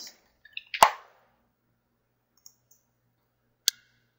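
Computer keyboard keystrokes and a mouse click at a desk: a few soft taps and one louder tap about a second in, then a single sharp click near the end.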